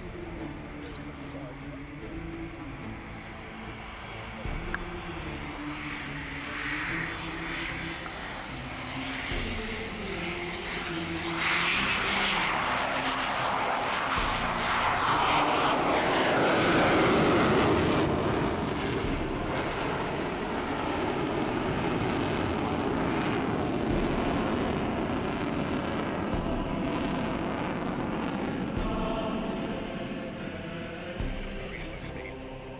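Sukhoi Su-27's twin AL-31F turbofans, heard as jet roar that swells from about a third of the way in. It is loudest just past the middle as the fighter passes close, then holds loud as it climbs away. A thin rising whine comes before the roar.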